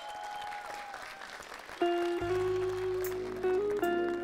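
Studio audience applause, then about two seconds in a live band starts a song's intro: held keyboard-like notes with a low bass note coming in just after.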